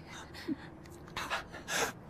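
A man's laboured gasping breaths, two of them about a second in, drawn between words by a man dying of a stab wound.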